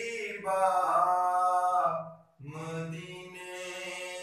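A man's voice chanting devotional Sufi verse in long, drawn-out held notes, with a short break for breath about two seconds in.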